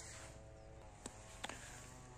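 Quiet pause with a faint steady hum in the background and two soft clicks, about a second in and again half a second later.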